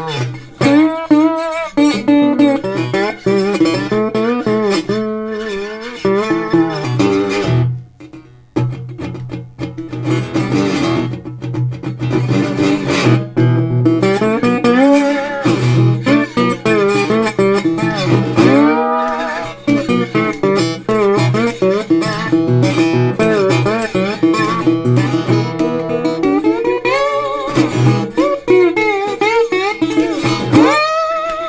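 Slide blues on a metal-bodied resonator guitar, fingerpicked: slid notes glide up and down over a steady bass on the low strings, with a brief pause about eight seconds in.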